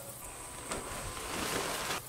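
Quiet outdoor background: a faint, even hiss that grows a little louder over the second second, with one small click under a second in.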